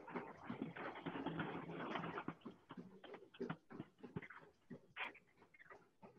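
Quick, irregular footfalls of two runners on TrueForm Trainer curved, non-motorized treadmills, faint over a video call. A stretch of breathy noise runs through the first two seconds.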